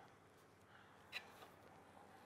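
Near silence: quiet room tone, with one faint short scrape a little past a second in, from a spatula stirring thick batter in a steel mixer bowl.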